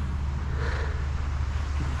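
A motor vehicle engine idling with a steady low rumble.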